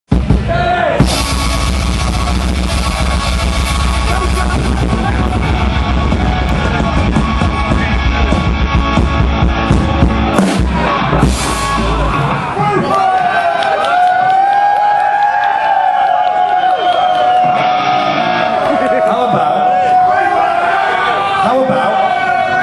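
Live rock band playing loudly through stage speakers, with drums, bass and electric guitar under a singer. About twelve seconds in, the drums and bass drop out, leaving a held, wavering sung note with crowd voices.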